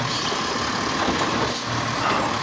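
Automated side-loader garbage truck's engine and hydraulics running steadily as its lifting arm holds a wheelie bin tipped over the hopper, emptying it.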